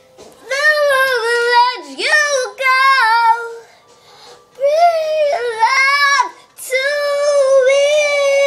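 A young girl singing, in three phrases of long, wavering held notes, with a short pause for breath about four seconds in.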